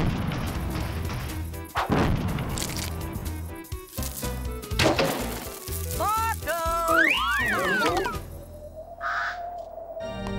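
Cartoon soundtrack music with comic sound effects: sharp crashing hits at the start, about two seconds in and about five seconds in. These are followed by a run of warbling pitched glides that rise and fall.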